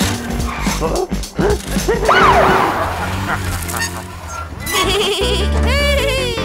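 Children's cartoon background music with wordless, bleat-like vocal exclamations and a big swooping up-and-down pitch glide about two seconds in.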